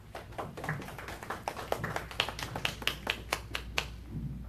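Audience applauding, with many separate claps heard distinctly, stopping shortly before the end.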